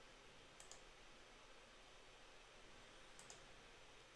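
Near silence with two faint computer mouse clicks, about half a second in and again near the end, as an image file is picked and opened in a file dialog.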